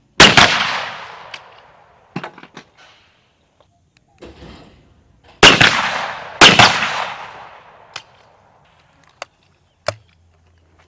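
Shotgun shots on a skeet range: one shot just after the start, then two shots about a second apart midway, each ringing off in a long echoing tail. A few light clicks fall between and after the shots.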